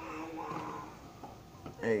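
Indistinct voice sounds in a small room, then a short spoken "Hey" near the end.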